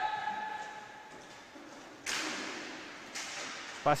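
A sharp crack of a hockey puck being struck about two seconds in, ringing on in a large sports hall, with a smaller knock about a second later.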